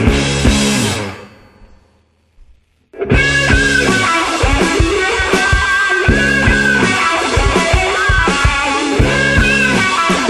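Psychedelic rock band of guitar, bass and drum kit playing an instrumental passage. About a second in, the music stops and dies away to near silence. Just before three seconds in, the full band comes back in together and plays on with a steady beat.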